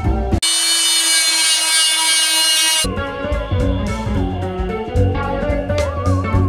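Background music with guitar, interrupted near the start for about two seconds by a power sander running with a steady whine.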